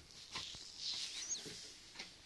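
Hands sliding over and folding a thin, floured sheet of rolled dough on a wooden board, a soft high rustle, with a single faint high chirp just after a second in.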